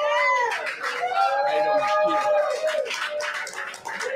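People's drawn-out calls and whoops: a short call that slides down in pitch, then a longer held call lasting a second and a half or more.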